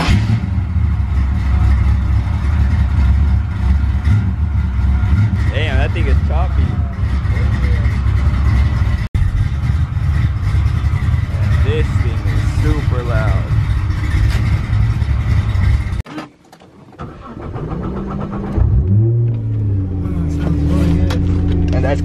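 A 1955 Chevrolet's engine running with a loud, deep, steady rumble. It cuts off abruptly about two-thirds of the way through, then restarts a couple of seconds later, catching with a rising note and settling into an even idle.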